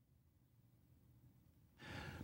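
Near silence, with a faint intake of breath near the end.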